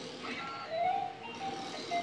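Battery-powered toy claw machine playing its simple electronic jingle, a melody of held beeping notes, while its claw is being steered.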